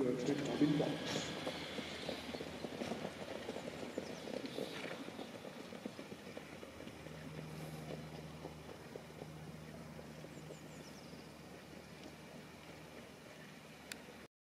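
Hoofbeats of harness-racing trotters on a sand track, fading steadily as the field moves away. A low steady hum joins about halfway through.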